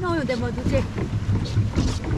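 Pedal boat under way, a steady low churning rumble from its paddle wheel and the water, with a voice speaking briefly at the start.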